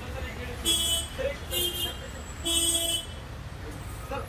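A vehicle horn honks three short times, each well under a second, about a second apart, over low street rumble.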